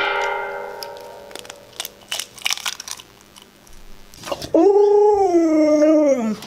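A stainless steel dog bowl ringing after a knock, fading away over about two seconds, with a few light clicks, then a Siberian husky howling, one long call about a second and a half long that drops in pitch at the end.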